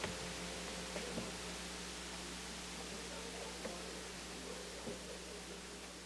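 Quiet room tone in a sanctuary: a steady hiss and low hum, with faint rustling and a few soft knocks as people settle into their seats. The sound slowly fades toward the end.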